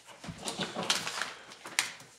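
Sheets of paper rustling and being handled close to a table microphone, with sharper crinkles about a second in and near the end.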